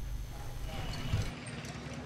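A quiet gap between speech: faint room tone with a low hum that drops out a little over a second in.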